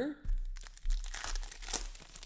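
Foil wrapper of a trading-card pack crinkling and tearing as it is pulled open by hand, a dense crackle with many small sharp snaps.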